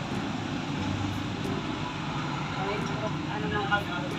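Steady roadside traffic noise from vehicles on a street, with faint voices in the background near the end.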